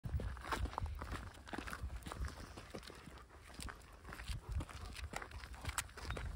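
Footsteps crunching irregularly on a gravel path, with the light clinks of a metal chain dog leash.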